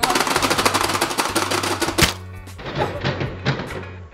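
Rapid plastic clacking of two players hammering the buttons of a Pie Face Showdown game, many presses a second, thinning out after a single louder knock about two seconds in. Background music plays underneath.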